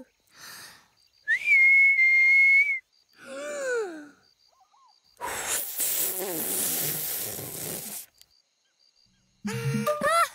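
A clear, steady whistle held for about a second and a half, then a short falling voice sound, then a long breathy blowing rush of about three seconds. The rush is an attempt to whistle that comes out as only a whoosh of air.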